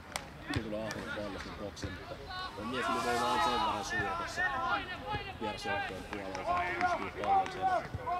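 Raised voices of football players calling out on the pitch during play, loudest about three seconds in and again near the end, with a few sharp knocks such as ball kicks.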